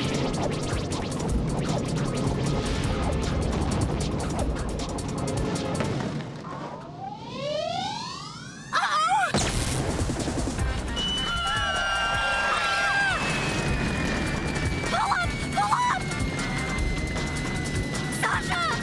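Cartoon action score with crash sound effects: a cluster of rising whistling glides about six seconds in, a sudden loud crash at about nine seconds as the flying car is hit, then a long, slowly falling whistle over the music.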